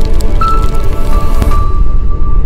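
Loud logo-sting music with a heavy low rumble and crackling sound effects; the high crackle cuts off about three-quarters of the way through, leaving the low rumble.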